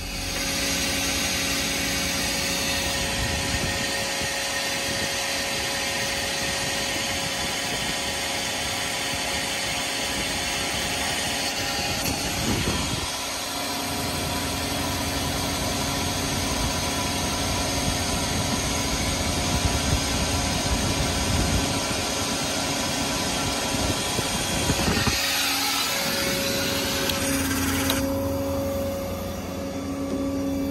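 Ford F-550 service truck's engine and hydraulic system running as the outrigger stabilizer leg and service crane are worked, a steady mechanical hum with a whine. The sound changes abruptly twice, about 13 and 25 seconds in.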